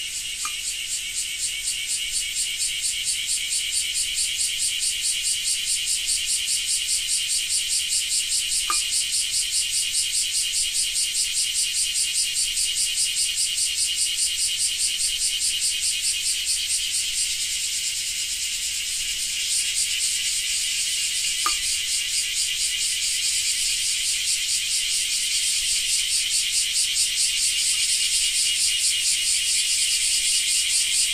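Cicadas singing: a high, rapidly pulsing buzz that swells over the first few seconds and then runs on steadily.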